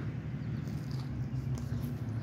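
A person biting into a burrito and chewing the mouthful, with soft faint mouth clicks over a steady low hum.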